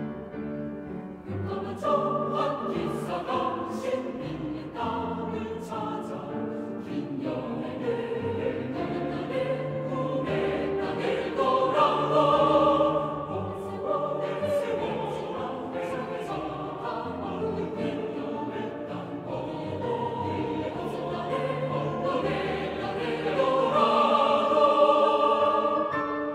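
Choir singing sustained chords with piano accompaniment, the voices entering about two seconds in after a few bars of piano.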